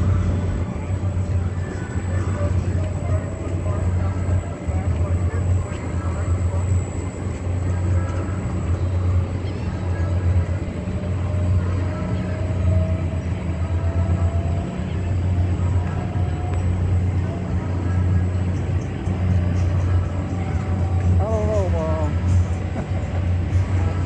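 Steady low mechanical hum of a tower swing ride running, with a faint tone rising slowly in the middle as the swings climb. Voices and music sound in the background, and wavering voices come in near the end.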